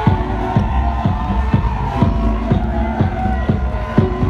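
House music with a steady four-on-the-floor kick drum, about two beats a second, under sustained chords.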